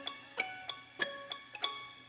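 The last bars of an electronic pop beat playing back: a sparse, bell-like melody of single notes, about three a second, each ringing out and fading, with no drums, dying away toward the end.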